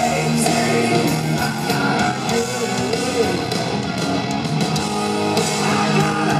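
Live rock band playing an instrumental passage: electric guitar over drums and cymbals, with no singing.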